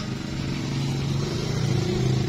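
A motor vehicle's engine: a steady, even hum that grows slowly louder, as of a vehicle drawing near.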